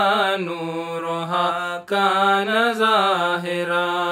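A single voice chants an Arabic munajaat, a devotional supplication poem, to a slow melody, drawing out long ornamented notes. There is a short break for breath a little under two seconds in.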